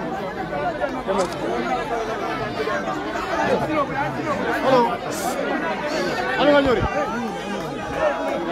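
A packed crowd of many people talking at once, their voices overlapping in a continuous babble, with a few louder voices standing out about five and six and a half seconds in.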